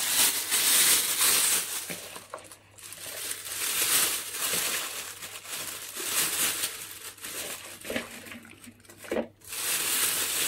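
Thin clear plastic bag crinkling and rustling in the hands in irregular bursts as sliced porcini mushroom pieces are put into it.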